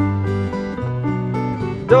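Acoustic guitar strumming held chords with a keyboard, the bass note moving a couple of times between sung lines; a male voice comes in singing right at the end.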